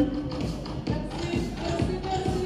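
Electro dance music played over a sound system, with a steady beat about twice a second under a synth melody.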